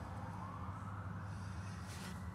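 A faint siren wailing in the distance, its pitch rising through the middle, over a steady low hum.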